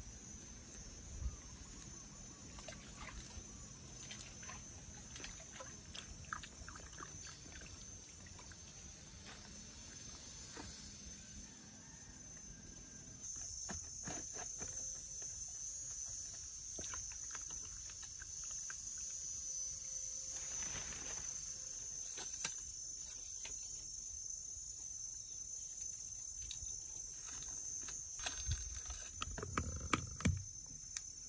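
Steady high-pitched insect chorus, getting louder about halfway through, with scattered faint clicks and rustles.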